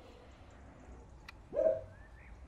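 A single short animal call, rising in pitch and then held, about one and a half seconds in, over faint birds chirping.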